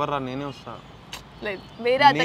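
Speech only: a man and a woman in conversation.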